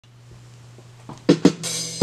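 The opening of a 1978 jazz-funk track: a faint low hum, then about a second in a drum kit comes in with two sharp drum hits and a ringing cymbal.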